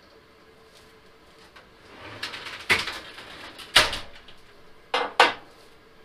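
A tube and small parts being handled and set down on a workbench: light handling noise and four sharp knocks in the second half, the last two close together.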